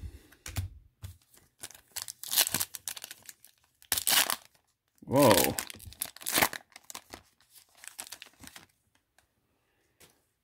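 Foil trading-card pack wrapper torn open and crinkled in several short bursts, with a brief vocal sound about five seconds in.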